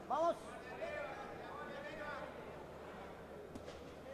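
A man's short, loud shout from ringside at the start, followed by quieter shouted words over the low background of the arena.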